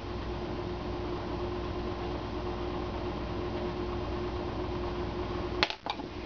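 Steady room hum with a constant faint tone. Near the end come a couple of sharp clicks, and then a brief drop in the sound.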